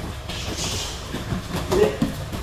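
Kickboxing sparring: feet shuffling and stepping on gym mats, with a louder thud of a kick landing on the guard near the end.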